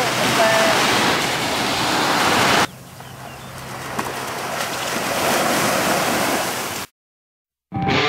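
Waves washing on a beach with wind on the microphone, and a brief voice near the start. The sound cuts to a quieter stretch of wash about a third of the way in, which builds again, stops abruptly shortly before the end, and guitar music starts just at the end.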